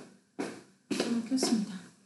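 A person's short huffs of breath and brief wordless voice sounds, several in quick succession, the longest near the middle.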